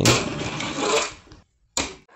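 Fingerboard's small wheels rolling across a ramp surface, fading out a little over a second in, then a brief knock near the end.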